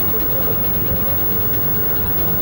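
Steady city street traffic noise, a low even rumble.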